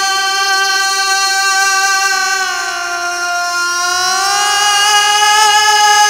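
A man's voice holding one long wordless sung note in a naat recitation. The note slides down in pitch about halfway through and climbs back up near the end.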